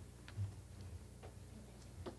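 Faint footsteps, soft low thuds with a few light ticks, over a steady low room hum.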